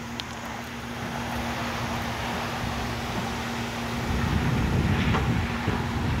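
A steady low hum holding one constant tone, with wind buffeting the microphone that grows louder over the last two seconds.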